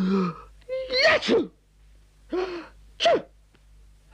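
A man's voice acting out a cartoon character's heavy cold: a held gasping 'ah', a rising build-up into a sneeze about a second in, then two shorter sneezes.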